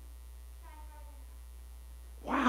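Steady electrical mains hum, with a faint, distant child's voice answering a question about a second in.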